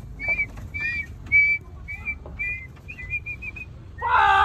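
A series of short, clear whistled notes, about two a second, each with a slight upward lift, breaking into a quicker run of shorter notes near the end.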